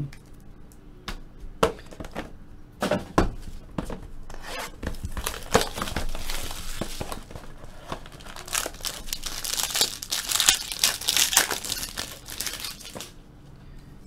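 Hands tearing open a shrink-wrapped trading card box: plastic wrap crinkling and tearing, with sharp clicks of cardboard. A few light clicks at first, then a steady run of crinkling that grows louder in the second half and stops just before the end.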